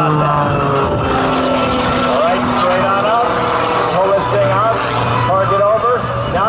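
Aerobatic plane's piston engine and propeller running hard through a vertical climb, the drone slowly dropping in pitch as it pulls up and slows. A voice or music, with a wavering pitch, runs over it.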